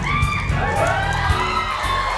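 Live rock music from the stage band with a steady beat, and voices shouting and whooping over it.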